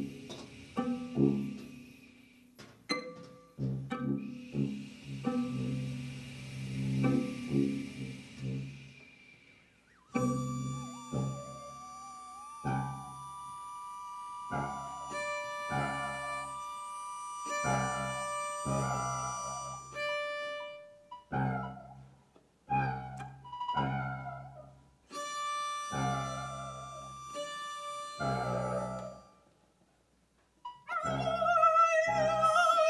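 Free-improvised music from a small ensemble of tuba, violin and electronic keyboard, played as short, separated low notes and stabs with brief gaps between them. A high note is held through the middle.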